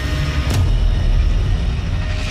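A tractor-trailer (big rig) passing close by: a loud, deep rumble of engine and tyres on the road, with a sharp click about half a second in.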